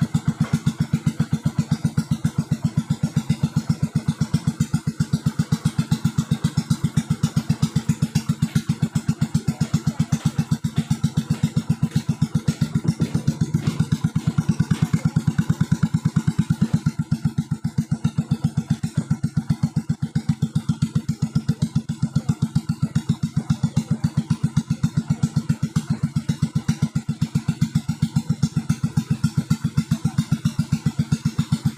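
A small boat engine running steadily as the wooden boat moves through the water, with a rapid, even chugging pulse that does not change.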